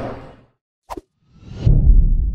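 Logo sound effect: a short sharp blip, then a whoosh that swells into a deep boom near the end and slowly dies away.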